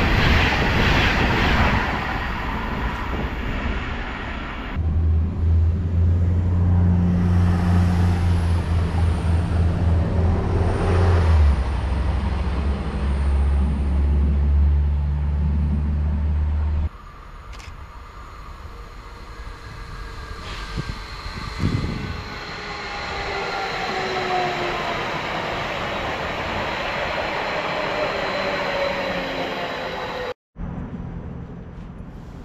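Deutsche Bahn ICE high-speed train running past the platform, its rolling noise dying away after a few seconds. A loud steady low hum follows and stops abruptly. Near the end come faint whines that fall slowly in pitch.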